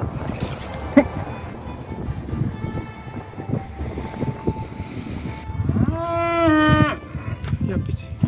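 Highland cow mooing once, a single call of a little over a second near the end, over rustling and handling noise.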